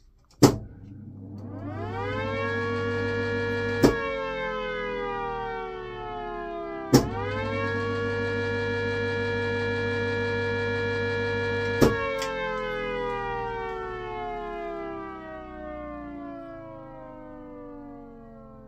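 Cold War three-phase air raid siren being test-run from its street cabinet control panel. A sharp click starts it, and it winds up to a steady howl. At another click it starts to wind down, then rises quickly back to full pitch at a third click. A last click shuts it off and it winds slowly down. A low hum runs underneath while it is powered.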